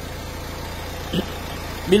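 Renault Mégane III dCi diesel engine idling steadily, a low even rumble.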